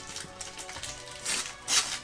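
Foil Yu-Gi-Oh! booster pack wrapper crinkling and tearing in the hands, in two short rustling bursts in the second half, over soft background music.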